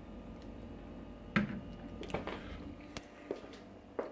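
Quiet room tone with a few scattered soft knocks and clicks, the sharpest about a second and a half in: handling and movement noise from a handheld camera being carried along.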